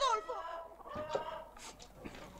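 Hens clucking, fairly quiet, with a voice trailing off at the start.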